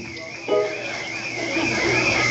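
A single guitar note plucked about half a second in and left ringing, with a faint high wavering tone held underneath.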